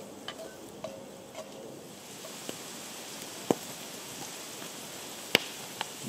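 Diced onion and cumin seeds sizzling in oil in a cast-iron pot over a campfire, a steady hiss. A few light ticks from a wooden spatula stirring come in the first second or so, and two sharp clicks stand out a few seconds in and near the end.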